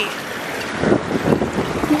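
Wind buffeting the microphone over a steady rush of surf, with a few dull thumps in the second half.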